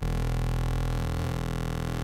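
Serum software synthesizer holding a single steady low bass note. The note plays a hand-drawn custom wavetable and is full of overtones.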